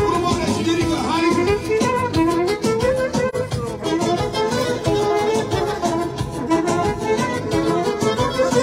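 A live band playing an instrumental manele piece: a trumpet carries a winding, ornamented melody over a steady drum beat.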